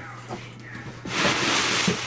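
Cardboard shipping box being pulled open by hand: a few soft clicks, then a loud rustling scrape of the flaps and packing from about a second in.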